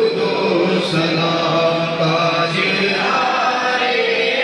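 A group of men's voices chanting together in a loud, continuous devotional chant, with long held notes.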